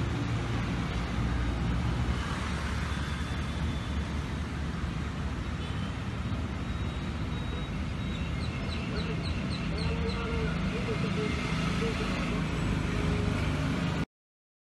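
Outdoor ambience of steady low traffic rumble with faint voices. A little past halfway a bird gives a quick run of about six high chirps, about four a second.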